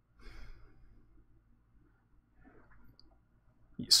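A man's faint breath out, like a sigh, near the start, then a faint second breath about two and a half seconds in, and otherwise near quiet until he starts speaking at the very end.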